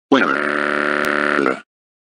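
A voice-like groan held at one steady pitch for about a second and a half, with a click about a second in.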